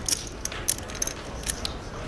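A handful of sharp separate clicks from poker chips and cards being handled on the table, over a low background murmur of the room.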